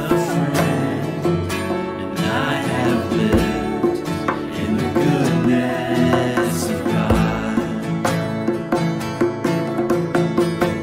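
Music with guitar and other plucked strings playing throughout.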